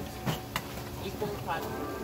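Quiet talking, with two light knocks in the first half-second.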